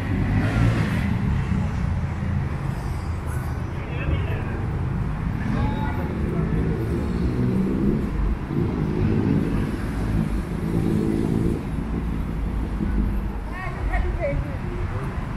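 City street ambience: steady traffic noise from cars on a busy avenue, with passers-by talking indistinctly.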